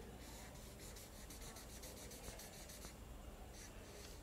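Faint scratching of a felt-tip marker on a flip-chart paper pad: a run of short strokes as a small cube is drawn.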